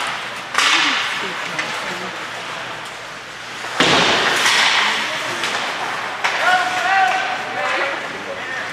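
Ice hockey play in an indoor rink: sharp slams against the boards ring out about half a second in and, louder, near four seconds, each trailing off in the arena's echo. Near the end a raised voice calls out.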